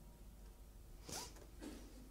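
A faint, brief rustle of paper sheets being handled on a lectern about a second in, with a softer one shortly after, in an otherwise near-quiet room.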